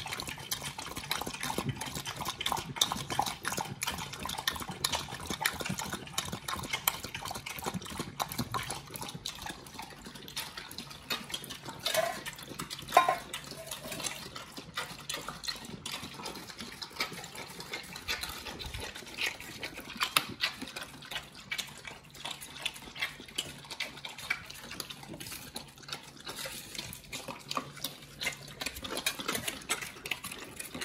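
Pit bulls lapping water from plastic tubs: a quick, continuous run of wet laps, with a couple of louder slurps about twelve and thirteen seconds in.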